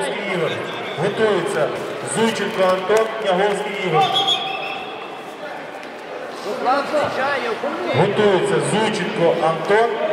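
A man's voice speaking, with a short pause about five seconds in.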